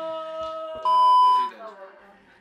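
A steady held electronic-sounding tone, then a loud pure beep about a second in that lasts about half a second and cuts off.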